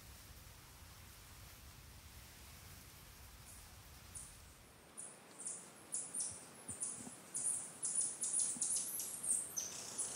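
A faint, near-quiet hush for the first few seconds. Then, from about five seconds in, a run of short, very high-pitched bird chirps, repeated irregularly several times a second.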